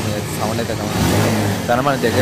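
Bajaj Pulsar 150 DTS-i single-cylinder four-stroke motorcycle engine running steadily, its note clear and even, with a few words spoken over it.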